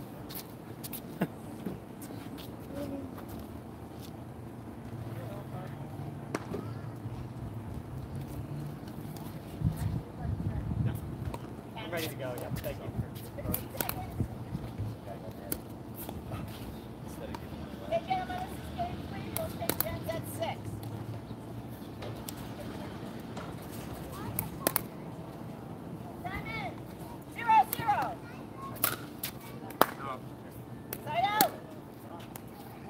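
Pickleball paddles striking a plastic ball, sharp irregular pops of a warm-up rally, more frequent in the second half, with voices talking in between.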